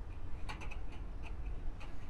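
Slatted window blinds being closed: a scatter of light, sharp clicks from the slats and tilt mechanism, in two quick clusters.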